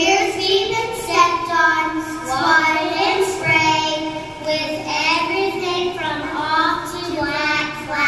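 Young children singing a song through a microphone, with long held notes.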